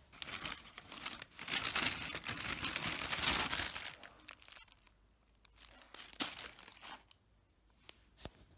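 A paper McDonald's takeaway bag and a paper food wrapper rustling and crinkling as they are handled and opened, loudest over the first four seconds, then a few scattered crinkles.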